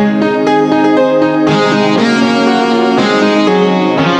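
Instrumental karaoke backing track playing a pop-song intro in B-flat at 120 beats per minute, moving through F7, E-flat and F7 chords with no vocal melody. About a second and a half in, the arrangement fills out and turns brighter.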